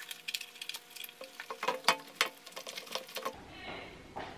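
Light rustling and small clicks of a high-top sneaker being handled, its laces and upper rubbing, breaking off suddenly about three seconds in.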